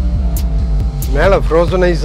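A person's voice, loudest in the second half, over a steady low hum.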